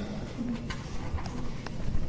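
Faint, scattered clicks of a stylus on a tablet screen as a new structure starts to be drawn, with a brief low hum about half a second in.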